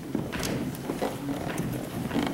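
People moving about in a church: footsteps, shuffling and a scattered series of irregular knocks and clicks.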